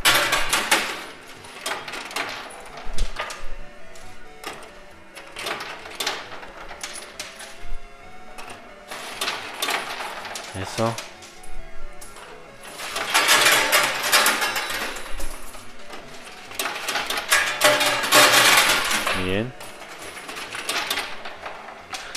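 Coins clinking and clattering inside a coin pusher machine, many small metallic clicks with louder stretches of dense clatter about 13 and 17 seconds in, over background music and voices.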